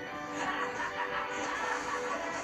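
Cartoon soundtrack music playing from a television, heard through the TV's speaker in the room.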